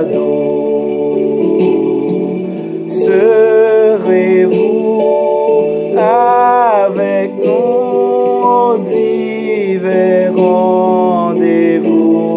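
A man singing a slow worship song over steady instrumental accompaniment, holding long notes that waver in pitch.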